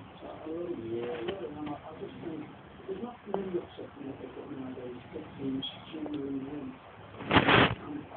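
Low cooing bird calls repeating throughout, with a short loud burst of noise near the end.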